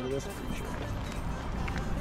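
Footsteps on dry leaf litter and twigs, with a low wind rumble on the microphone.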